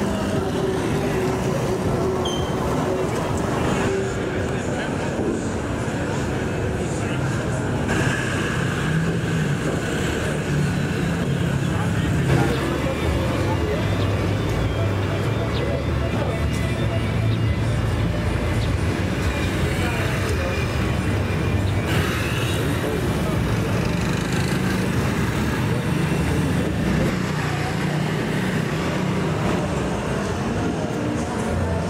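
Busy street ambience: motorbike and car traffic running steadily, with people's voices mixed in.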